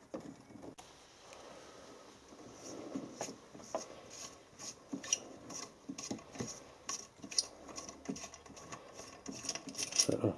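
Light, irregular metallic clicks and taps as a Mamod toy steam roller is handled and the small safety valve on top of its boiler is unscrewed.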